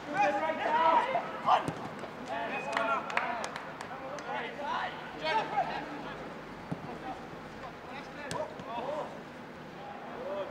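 Footballers shouting short calls to one another during a fast passing drill, with occasional sharp knocks of the ball being kicked.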